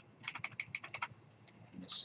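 Typing on a computer keyboard: a quick run of about a dozen keystrokes in the first second, then a pause.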